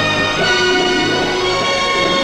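Instrumental opening theme music of a TV series, held notes moving from one pitch to the next.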